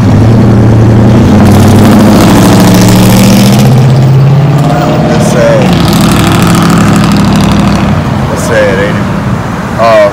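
A motor vehicle's engine running close by with a loud, low drone that rises slightly in pitch, then dies down about eight seconds in.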